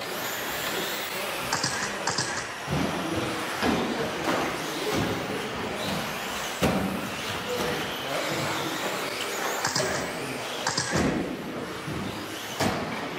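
Electric RC 2WD buggies running on a carpet track: a high-pitched whine comes and goes as they pass, over steady tyre and drivetrain noise, with several sharp thuds from the cars landing or hitting the track.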